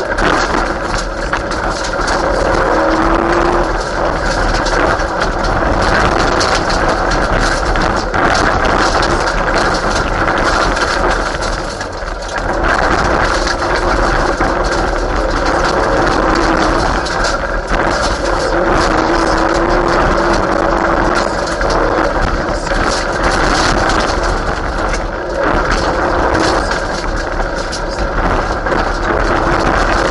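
Mitsubishi Lancer Evolution VII Group A rally car's turbocharged four-cylinder engine working hard at speed on a gravel stage, heard from inside the cabin, its pitch rising and falling through gear changes. Loud road and gravel noise runs underneath, and everything dips briefly near the middle.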